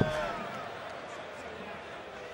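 A steel-tip dart thuds into the board right at the start, followed by a low murmur from the arena crowd.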